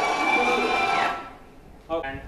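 Soundtrack of a projected crowd video over the hall's speakers: a crowd cheering with a voice over it, cutting off suddenly just after a second in. A brief voice follows near the end.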